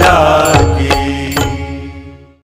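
Closing bars of a Hindi devotional aarti song to Hanuman. The voice finishes its last phrase over held accompaniment notes. Three sharp percussion strikes follow, and the music fades out near the end.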